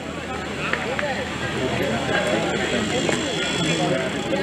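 Indistinct chatter of several overlapping voices, players and onlookers at a cricket match, with no single clear speaker.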